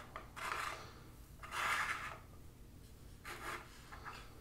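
A plastic action figure and its plastic display stand being handled and turned on a tabletop: three short, soft scraping rubs.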